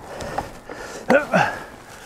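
A man's voice, with two short vocal sounds a little past a second in, over low background noise.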